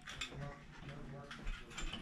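A few faint, light clicks and knocks, like small objects or the phone being handled. A faint high voice sounds under them.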